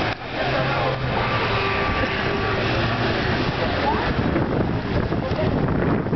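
A fire truck's engine running as it moves through city traffic: a low hum that fades out about halfway through, under general street noise and voices.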